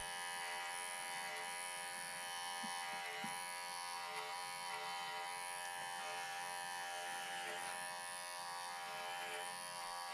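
Cordless electric animal clippers running with a steady buzz as they trim angora rabbit wool close to the skin.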